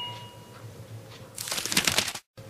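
A light ringing clink fades away over the first half second. Near the end comes about half a second of crackling, crinkling rustle, and then the sound cuts off suddenly.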